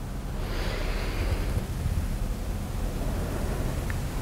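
Steady low hum in a quiet room, with a soft breath out about half a second in.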